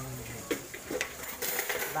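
A few light clinks of a utensil against a metal wok of cooked adobong kangkong. The tail of a spoken word comes at the start.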